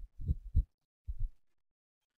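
A few dull, low thumps within the first second and a half, the second one doubled.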